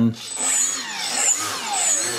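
The two electric motors and propellers of a twin-motor RC model plane spool up and down in turn as rudder is applied through a differential-thrust mix. Their whines rise and fall in pitch in two or three swells.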